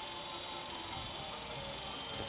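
Steady low background noise in a workshop: a faint even hiss and hum with no distinct event.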